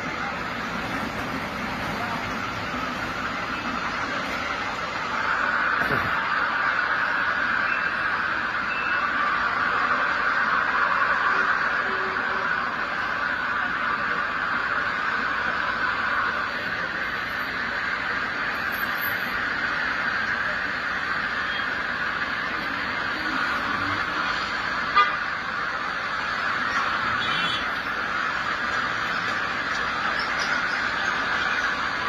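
Steady city street traffic noise with car horns at times, and one sharp knock about 25 seconds in.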